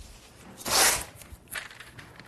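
Low-tack painter's tape being pulled off the roll: one loud swish a little over half a second in, and a shorter one about a second and a half in.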